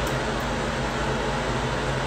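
Steady hum and hiss of a bathroom ventilation fan running, with nothing else happening.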